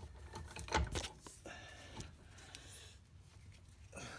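A few scattered metallic clicks and light knocks from a socket ratchet and torque multiplier being worked against a very tight axle nut.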